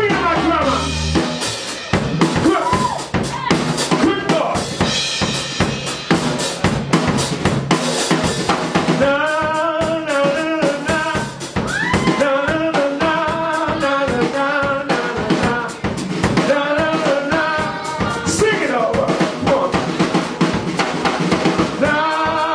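Live soul band with drum kit: the bass drops out about a second in, leaving the drums playing a break with snare and rimshots, and from about nine seconds in a man's voice sings over the drums and band.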